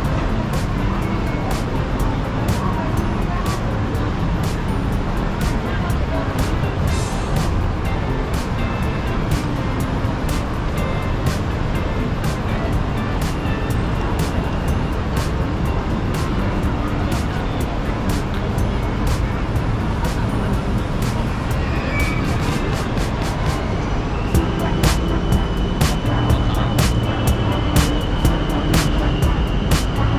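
Busy city-plaza ambience: crowd chatter, traffic and music, with the steady footsteps of someone walking. Near the end a BTS Skytrain's electric whine rises and holds steady as the train moves along the elevated track.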